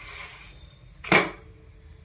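A paratha being flipped with a wooden spatula on a non-stick pan, landing with a single sharp slap about a second in.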